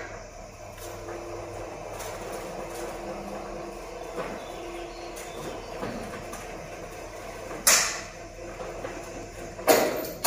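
Electric motor of a rolling steel shutter running steadily with a low hum as the shutter rolls up. There is a single sharp knock about three-quarters of the way through.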